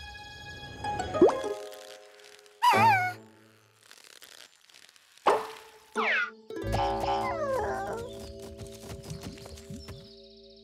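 Cartoon sound effects: springy boings and wobbly sliding tones, the loudest about three seconds in, as a toy ring bounces around. Children's music runs underneath and fills out in the second half.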